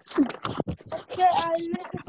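Indistinct overlapping voices mixed with a jumble of short noisy bursts and clicks from many open microphones on a video call.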